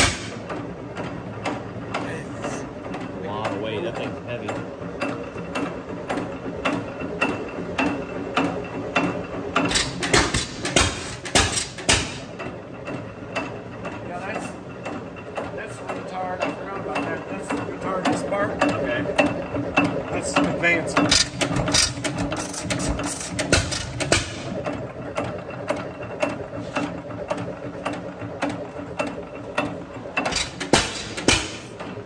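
Economy hit-and-miss stationary gas engine running, its flywheels turning: a fast, steady clicking of the valve gear and governor. Louder runs of firing strokes come in now and then, around a third and again about two-thirds of the way through, as the governor lets it fire when it slows.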